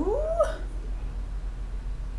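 A woman's drawn-out, trailing word rising steeply in pitch over the first half-second, then only a steady low mains hum and faint hiss of room tone.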